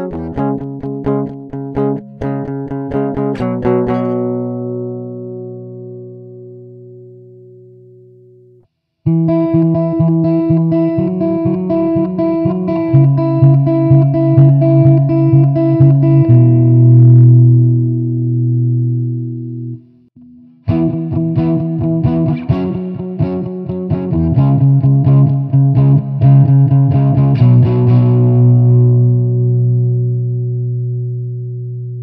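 Electric guitar recorded direct, with no amp: clean, thin picked notes that ring out and fade over the first several seconds. After a brief silence the same part plays through an amp-simulator plugin on a crunch preset, with a fuller, lightly distorted amp-and-cabinet tone. It stops briefly about twenty seconds in and then plays again.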